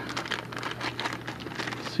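Clear plastic parts bag crinkling as it is worked open by hand, a dense, irregular crackle.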